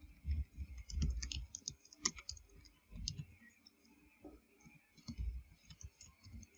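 Computer keyboard keystrokes clicking in short, irregular runs with pauses between them, as a word is typed.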